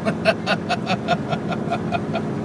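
A man laughing in a quick run of short ha-ha pulses, about five a second, fading toward the end, over the steady hum of a moving car's cabin.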